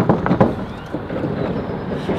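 Loud, steady noise of heavy road traffic passing close by on a busy bridge.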